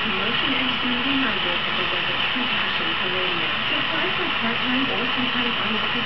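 Steady hiss of a lit handheld gas torch burning on its fuel cylinder, with a voice underneath.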